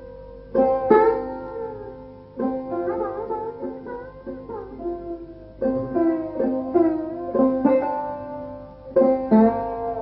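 Sarod played solo: plucked notes that ring on, with slides in pitch between them and short runs of quick strokes. The notes are stopped with the fingernails on the instrument's metal fingerboard.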